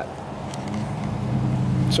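A steady low engine hum in the background, growing louder in the second half.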